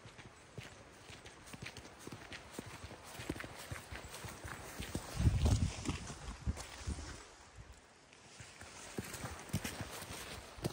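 Walking boots crunching on a gravel track: two hikers' footsteps in an irregular patter, loudest about five seconds in as they pass close by.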